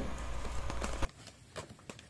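Faint hiss with a few soft ticks, which cuts off abruptly to near silence about a second in.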